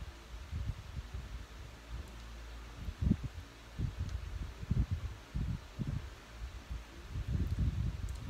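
Irregular low rumbling thumps and buffeting on the microphone over a steady low hum, with no clear event standing out.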